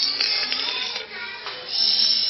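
A plastic straw squeaking as it is forced down through the frozen, icy top of a blended chocolate frappe. The high squeals come in two spells, one at the start and one near the end.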